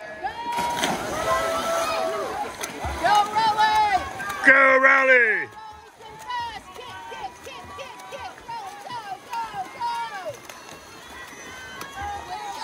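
Spectators shouting and cheering swimmers on during a race, many separate calls overlapping, the loudest a long, falling yell about five seconds in. Splashing as the swimmers hit the water in the first two seconds.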